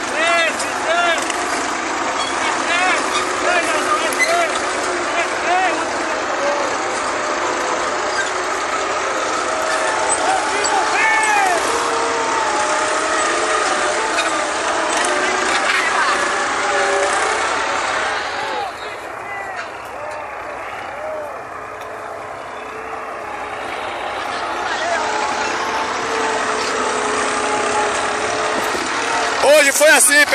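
Several farm tractors' diesel engines running under load as they pull harrows through dry soil, with people's voices heard over them at times.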